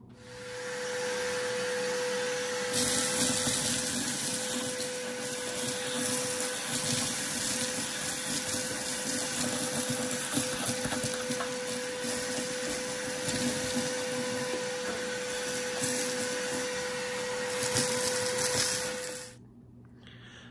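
Stanley shop vac running with a steady whine, sucking creosote chunks and flakes out of a wood stove's pipe collar, with a rattling rush as debris goes up the hose. It spins up right at the start and shuts off near the end.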